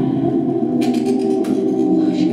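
Live electronic music: a held, chord-like drone of several steady layered tones, with a brief hiss a little under a second in.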